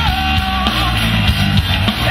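Loud rock music with guitar and drum kit playing steadily.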